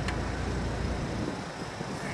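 Jeep Wrangler TJ engine running as it climbs a dirt off-road trail, growing fainter about halfway through as it pulls away.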